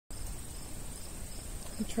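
Insects trilling steadily in a high, even pulse.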